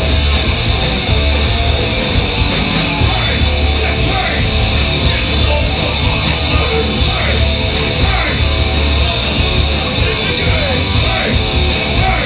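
Punk rock band playing live at full volume: distorted electric guitars and drum kit, steady and without a break.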